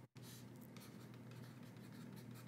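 Faint scratching of a stylus writing numbers on a tablet screen, over low room hiss.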